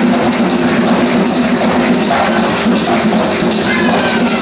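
Live drum ensemble playing loud, dense hand-drumming on barrel drums, with a voice calling out near the end.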